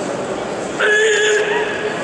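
A karate kiai, a sharp loud shout from the kata competitor, bursting out about a second in and held for about half a second, over the chatter of spectators in a large hall.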